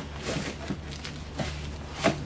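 An opened cardboard box being handled: a few light knocks and rustles as it is tilted and set down, over a steady low hum.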